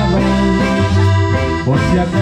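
Live band playing an instrumental passage without singing: accordion leading over bass, drums and keyboard, with sustained chords and steady bass notes.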